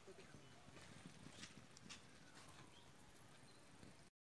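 Near silence: faint outdoor background with a few soft clicks, the sharpest right at the start.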